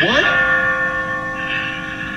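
Sustained bell-like ringing tones, a steady chord of several held pitches with no beat, as in an eerie soundtrack drone. A short rising glide sounds right at the start.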